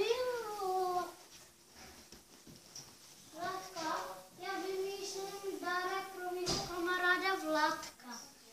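A young child's voice singing in long held notes, after a brief sliding vocal sound at the start, with one short knock about six and a half seconds in.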